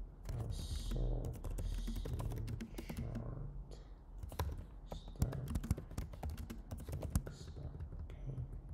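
Typing on a computer keyboard: a quick, uneven run of keystrokes, with short pauses between bursts.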